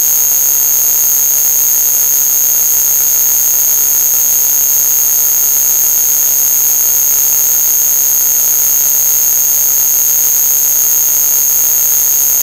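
Loud, unchanging electronic noise: a harsh hiss with two piercing high whistling tones on top, holding at the same level throughout.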